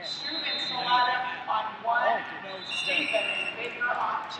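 Indistinct voices of people talking in a large hall, with a brief high tone a little under three seconds in.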